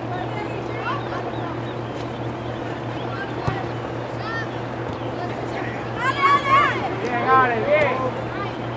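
Distant high-pitched shouts from soccer players on the field, loudest near the end. They sound over a steady low hum and outdoor background noise.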